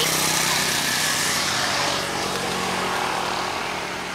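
A motor vehicle engine running nearby: a steady hum under a rushing noise that is loudest in the first second and a half and then fades.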